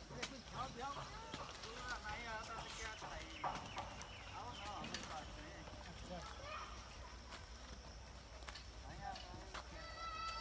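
Faint, indistinct voices of people chattering, with a few scattered clicks and knocks.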